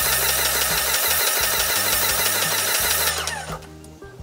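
Paint spray gun spraying with a steady, loud hiss that stops abruptly about three seconds in. Background music plays underneath.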